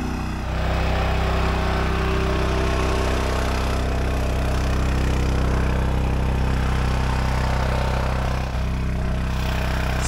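Trash pump running steadily with its suction hose in a shallow puddle, drawing in air along with water. The intake is running dry: not enough water is reaching it to keep the pump fed.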